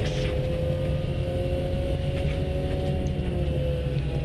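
Volkswagen GTI rally car heard from inside the cabin, its engine running at fairly steady revs on a gravel stage, with a constant rumble of tyre and road noise beneath.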